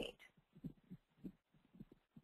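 Near silence: room tone, with a few faint, short low thumps through the middle.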